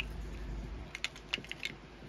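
A few light clicks and taps from small figurines being handled, clustered a second or so in.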